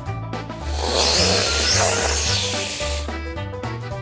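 Snake hissing sound effect: one long hiss lasting about two and a half seconds, over background music with a steady bass line.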